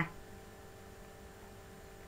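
Faint, steady electrical hum in a pause between words, with a few thin constant tones over a low hiss.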